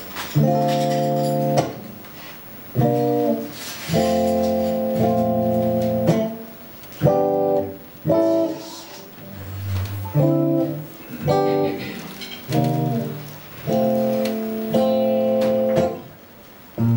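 Clean electric guitar playing a slow chord intro: chords held a second or two each, letting them ring, with short breaks between.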